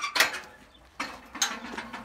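Metal barred gate being unlatched and opened: a sharp metallic clank just after the start, then more clanking and rattling about a second in.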